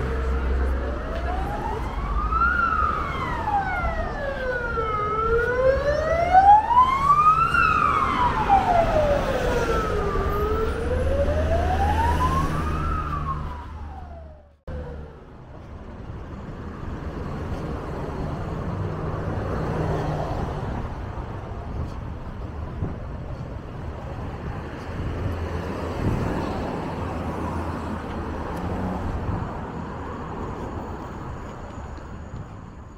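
An emergency vehicle's siren wailing, slowly rising and falling about every five seconds over street traffic. About halfway through it cuts off suddenly, leaving only steady traffic noise.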